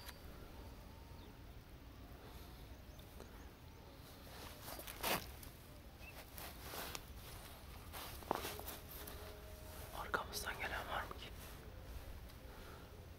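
Faint rustling and a few sharp knocks of dry reed stems being brushed and handled in a duck blind, with low whispering; a short cluster of louder rustles near the end.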